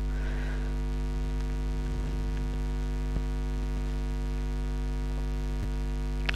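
Steady electrical mains hum in the recording: a low, unchanging hum with a ladder of even overtones. There is one faint tick about three seconds in.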